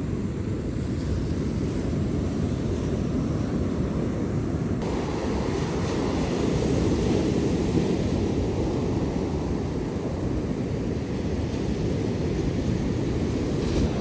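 Ocean surf breaking on a beach with wind blowing across the microphone: a steady noise with most of its weight low down. The sound shifts slightly about five seconds in.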